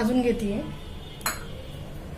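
A steel bowl clinks once against a metal kadai about a second in, as gram flour is tipped from it into the dry pan. A woman's voice trails off at the very start.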